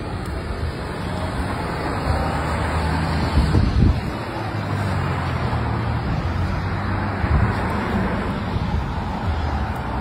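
Steady road traffic noise: vehicles running by with a low engine hum, swelling louder briefly about three and a half seconds in and again past seven seconds.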